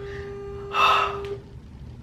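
Phone ringback tone from a smartphone's speaker, one steady tone that stops about a second and a half in: the call is still ringing, not yet answered. A sharp breath is drawn about a second in.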